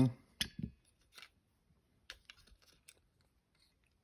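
Small metal and plastic clicks and ticks as a screwdriver works the float pivot pin out of a 1984 Honda 200X carburetor and the plastic float comes off. There are two sharp clicks within the first second, then a few faint ticks later on.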